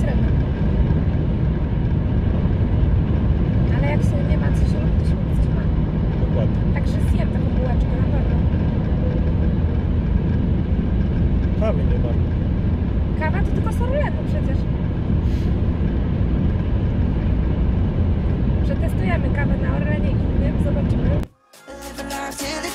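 Steady low road and engine rumble inside a car's cabin as it cruises on a motorway on winter tyres, with faint voices now and then. Near the end it cuts off suddenly and music starts.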